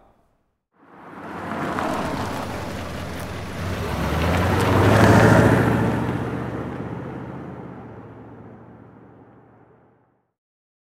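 A car driving past, most likely a sound effect under the outro logo: engine rumble and rushing noise build up, peak about five seconds in, then fade away.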